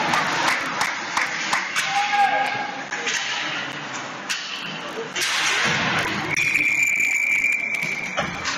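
Ice hockey play on a rink: sticks and puck clacking, with players' shouts. Near the end, a referee's whistle sounds as one long steady blast of about a second and a half, stopping play.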